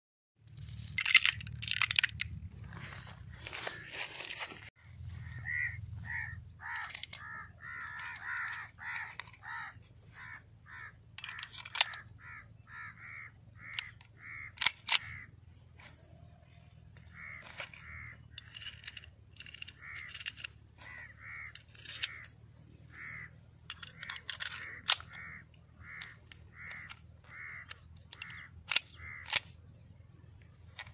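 A crow cawing over and over, about a call every half-second. Now and then come sharp clicks from gun parts and cartridges being handled.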